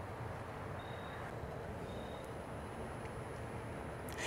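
Steady low background rumble with two faint, short high beeps about a second apart.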